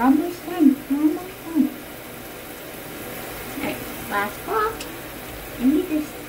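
Water running steadily from a hand-held shower hose as a dog is washed in a bathtub, broken by short stretches of a woman's soft voice in the first two seconds, around four seconds in and near the end.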